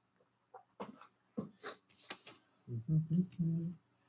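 Scattered rustles and sharp clicks of 7-inch vinyl records in paper sleeves being handled and pulled from a collection. Near the end comes a short wordless sound from a man's voice.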